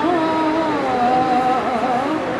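A single voice singing a slow melody, holding long notes that waver and glide gently from one pitch to the next.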